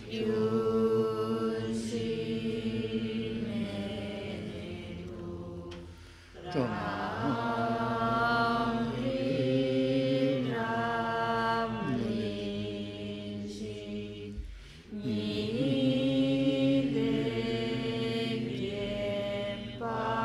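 Voices chanting a Tibetan Buddhist prayer in long, held, melodic phrases. Each phrase opens with a sliding pitch. There are short breaks for breath about 6 and 14 seconds in.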